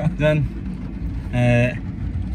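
Men talking inside a moving car's cabin, with one drawn-out vocal sound about a second and a half in, over the car's steady low rumble of road and engine noise.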